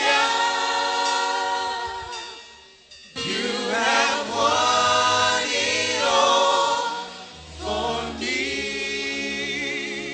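A choir of voices singing a slow gospel worship song in long held phrases. The singing fades out around two seconds in and comes back just after three seconds.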